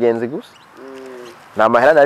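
A bird gives one short, steady low call about a second in, quieter than the man's speech on either side of it.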